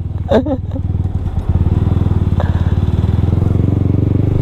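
Motorcycle engine running as the bike rides through a turn, a low pulsing exhaust note that steps up in loudness about a second and a half in as the rider opens the throttle.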